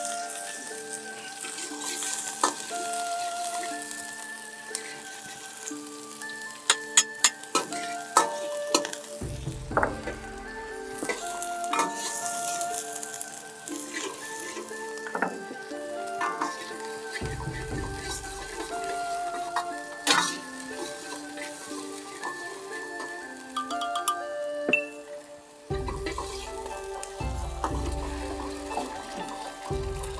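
Diced shallots and then garlic sizzling in hot oil in a wok, stirred with a metal wok ladle that scrapes and clinks against the pan, with a cluster of sharp ladle strikes a few seconds in.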